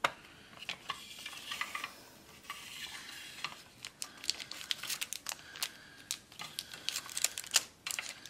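Clear acrylic plastic pen case being handled and opened by hand: irregular clicks, taps and light scraping of hard plastic, with a sharp click near the end.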